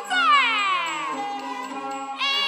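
Huayin laoqiang traditional ensemble music: a long note slides steadily downward for about a second over steady held accompaniment notes.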